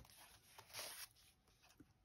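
Near silence with a faint, soft rustle of paper as a card is slid out of a paper pocket in a handmade journal.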